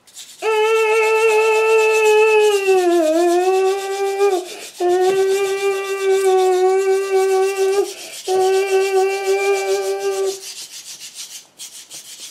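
A child's voice holds three long, steady notes on about the same pitch, the first dipping briefly in the middle. Under them runs a constant scratchy rasp: a digging tool scraping at a dig-kit block.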